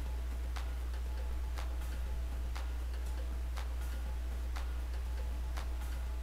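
A clock ticking about once a second over a steady low hum.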